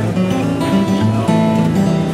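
Acoustic guitar music, strummed chords changing every half second or so.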